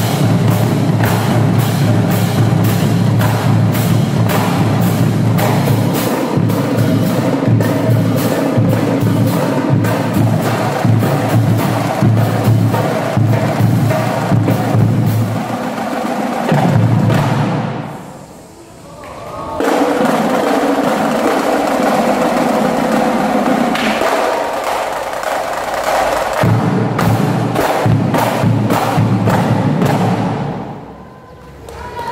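Marching drumline of bass drums, snare drums and crash cymbals playing a fast cadence of dense, rapid strokes. It breaks off briefly a little past halfway, then comes back in.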